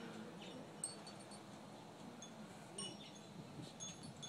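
Metal wind chimes tinkling faintly, a few scattered high ringing notes.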